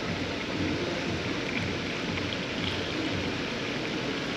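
Blue windshield washer fluid pouring steadily from a jug into the washer reservoir's filler neck, a continuous trickle of liquid. It is a long pour into a reservoir that takes a lot of fluid.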